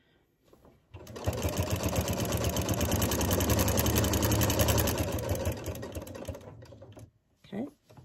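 Singer Quantum Stylist 9960 sewing machine stitching through a quilt at speed, starting about a second in with a rapid, even run of needle strokes. It slows over the last couple of seconds and stops near the end.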